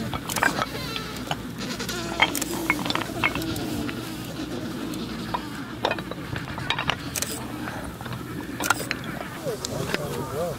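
Adélie penguin colony calling, with wavering, bleat-like calls over a steady background of distant calls. Sharp clicks and knocks are scattered through it.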